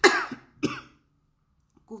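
A woman coughing twice, about half a second apart, the first cough the louder. It is a cough from her COVID-19 illness, which she blames on a virus caught in hospital and which makes it hard for her to speak.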